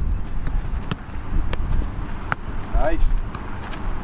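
A football being kept up between players: a string of sharp thuds of boots, knees and chests striking the ball, spaced roughly half a second to a second apart, with a brief shout from a player about three seconds in.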